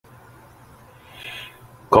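Faint steady hum of a recording room, with one short breathy vocal sound from the presenter about a second in, just before his speech begins at the very end.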